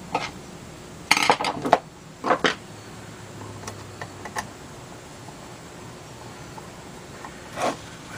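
Small metal clicks and clinks of a screwdriver and wire clips against the screw terminals and aluminium case of an MPPT solar charge controller, with a quick cluster about a second in and a few scattered ticks after.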